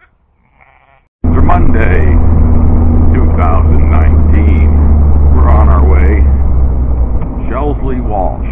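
A sheep bleats faintly. About a second in, the sound cuts abruptly to the loud, steady, deep drone of a vintage open sports car's engine and wind noise at road speed.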